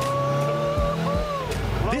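A man's long whooping shout, held on one pitch for about a second and a half, then a shorter one that falls away, over the low rumble of a car's engine and road noise inside the cabin.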